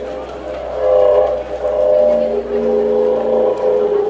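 Long wooden wind instrument played live: sustained notes that shift in pitch, swelling about a second in, with a lower held note joining about two seconds in.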